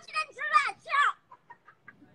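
High-pitched laughing in three short bursts with swooping pitch, followed by a few faint clicks.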